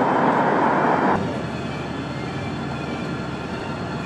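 City street traffic noise: a louder rush for about the first second, then a steadier, quieter background of traffic.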